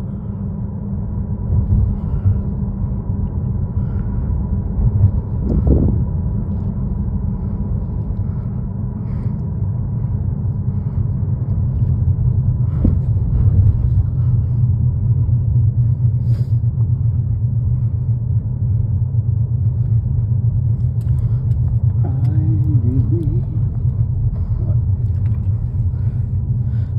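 Steady low road and engine rumble heard inside a moving car's cabin, with a few faint knocks along the way.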